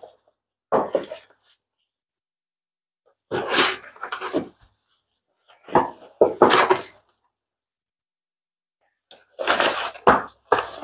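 A nylon backpack being handled: several short bursts of fabric rustling and zipper rasps, with silent gaps between them.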